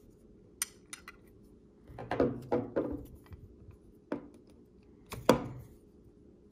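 Clicks and clinks of a fixed-blade knife's steel handle frame and a Micarta handle scale being handled and fitted together. There are a few light clicks, then a cluster of louder knocks about two seconds in, and the sharpest knock near the end.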